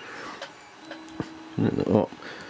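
Quiet room tone with a faint short hum and a single small click about a second in, then a brief murmur of a voice near the end.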